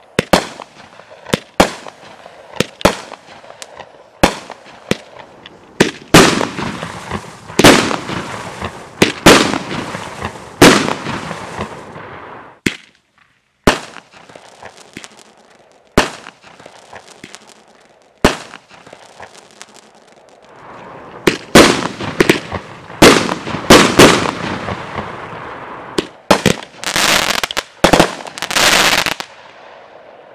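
A homemade 25-shot firework cake firing: a long string of sharp bangs, many trailed by a drawn-out rush of noise. There is a short lull near the middle and a quick flurry of shots near the end.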